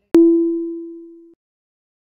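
A single bell-like note of an end-card logo sting. It strikes sharply, rings and fades for about a second, then cuts off abruptly.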